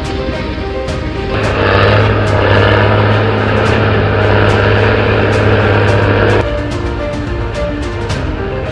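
Background music with a steady beat, with the sound of a heavy diesel engine running steadily laid over it for about five seconds. The engine sound starts and stops abruptly.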